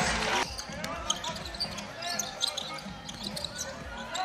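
Basketball game sound in an arena: a basketball bouncing on the hardwood court and brief sneaker squeaks over crowd chatter. A louder burst of crowd noise cuts off sharply about half a second in.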